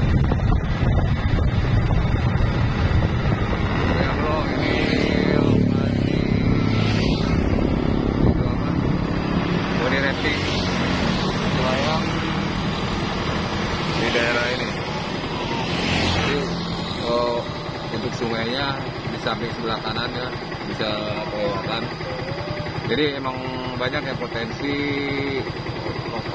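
Motorcycle traffic with wind on the microphone while riding along a road, other motorcycles going by. In the second half, people's voices can be heard nearby.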